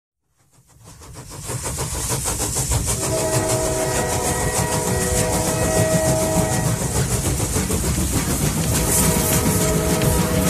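Train sound effect opening a podcast intro: a rumbling, rhythmic clatter fading in over the first two seconds, with a horn chord of several held tones from about three seconds in to six and a half.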